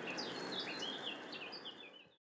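Small birds chirping, a quick series of short high notes over a soft outdoor hiss, fading out near the end.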